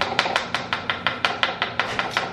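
A spoon stirring in a plastic mixing bowl, knocking against the bowl's side in a quick, even run of clicks, about seven a second.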